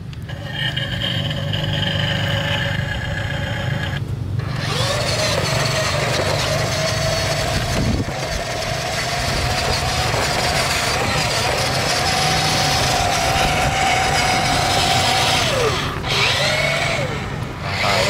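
Electric motor and gear whine of a remote-control toy dump truck. A steady whine stops about four seconds in, then a single whine that dips and recovers in pitch with the throttle runs while the truck drives across gravelly dirt, over a rough crunching noise from its tyres.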